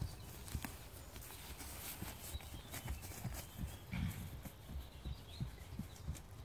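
Hooves of a pinto pony thudding irregularly on pasture grass as it moves off across the paddock.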